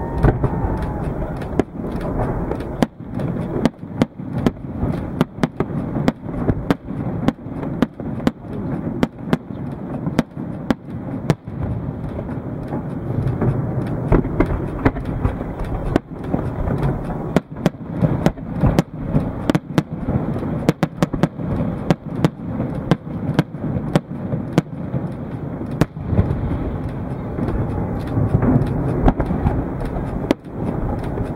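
Fireworks display: shells bursting in an irregular run of sharp bangs and crackles, several a second at times, over a continuous low rumble.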